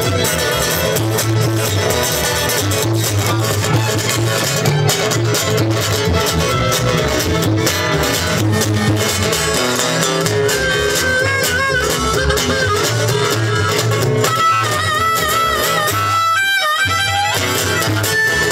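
Live acoustic string band playing an instrumental passage: bowed fiddle over acoustic guitar and plucked upright bass. Near the end the bass drops out for about a second, leaving high wavering held notes.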